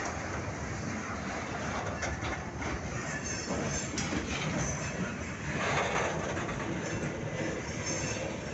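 Freight cars of a passing KCSM freight train rolling along the track, steel wheels running on the rails, with a louder swell of wheel noise a little before six seconds in.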